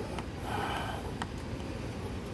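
A short breath or sniff close to the microphone, with a few faint clicks of hands turning a tail-light fastener, over a low steady rumble.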